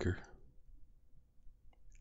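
A short pause in a man's speech: his last word trails off, then near silence, with one faint click shortly before he speaks again.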